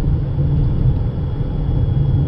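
Steady low road and tyre rumble inside the cabin of a moving 2018 Toyota RAV4 Hybrid, with a faint steady high tone above it.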